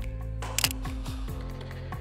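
Background music with steady sustained tones plays throughout; just over half a second in, the shutter of a Sony ZV-E10 mirrorless camera fires once, a short sharp double click that is the loudest sound.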